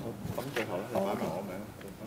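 Faint, distant talking picked up off-microphone in a large hall, with a few light clicks.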